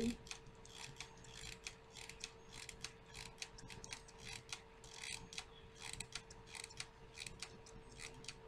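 Small hot glue gun's trigger and glue-stick feed mechanism clicking faintly and irregularly as glue is squeezed out, over a faint steady hum.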